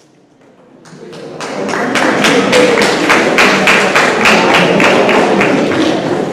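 A fast, even rhythm of sharp percussive beats, about five a second, over a dense steady backing, swelling in over the first two seconds.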